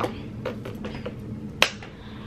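A single sharp snap from the hands about one and a half seconds in, with a few faint clicks before it.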